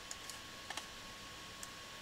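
A handful of sharp clicks from a computer keyboard and mouse being worked, about five, the loudest a quick pair a little before halfway. Under them runs a faint steady hiss with a thin steady tone.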